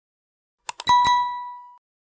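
Subscribe-button animation sound effect: a few quick mouse-like clicks, then a bell ding whose single ringing tone fades out in under a second.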